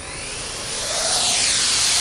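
Experimental 'whisper drone', a quadcopter with ducted-fan rotors instead of open propellers, flying: a hissing whoosh of moving air, without the usual quadcopter propeller buzz, that grows steadily louder, with faint tones sweeping up and then down near the middle. It is not perfectly quiet.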